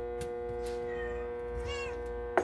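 A cat gives one short meow near the end, its pitch rising and then falling, over a steady background hum.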